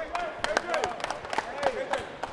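Gym floor chatter: several players' voices in the background and a scattered run of sharp hand claps and high-five slaps.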